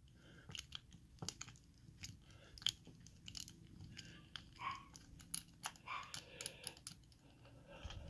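Faint, irregular small clicks and scraping from a small driver turning in a hole in the top of a Master Lock padlock body as the lock is being disassembled.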